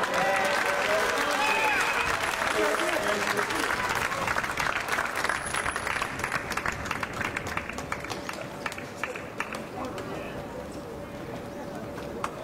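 A small crowd of spectators applauding, with voices calling out in the first few seconds; the clapping thins out after about seven seconds.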